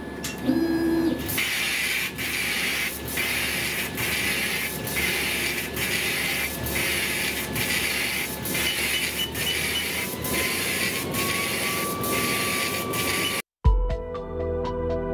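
Thunder Laser Nova 35 100 W CO2 laser engraving a board line by line: a steady hiss of air assist and gantry motion that dips briefly about every two-thirds of a second as the head reverses at the end of each line. A short low tone sounds about half a second in, before the run starts, and the sound cuts off suddenly just before the end.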